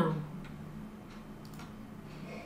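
Quiet room tone with a steady low hum and a few faint, soft mouse clicks.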